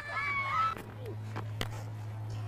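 A faint, high, gliding voice in the first moments, over a steady low electrical hum, with a couple of sharp clicks about a second and a half in.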